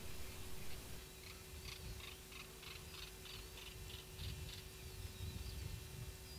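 Faint outdoor ambience with a small bird calling a quick run of short high chirps, about four or five a second, then a few thin wavering whistles near the end, over a low rumble and a steady hum.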